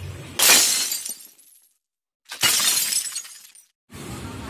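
Two sudden crashing sound effects like breaking glass, about two seconds apart, each fading out within about a second into dead silence: an edited-in transition effect.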